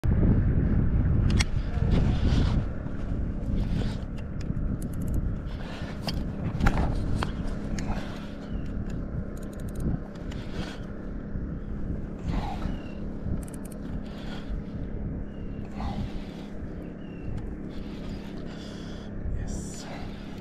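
Wind rumbling on the microphone, heaviest in the first few seconds, with scattered clicks and knocks from the fishing rod and baitcasting reel as it is handled and wound in.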